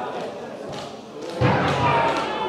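A football kicked with a thump about a second and a half in, followed by voices calling out on the pitch.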